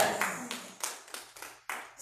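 Scattered hand clapping from a small congregation, a few separate claps a second that trail off and fade away.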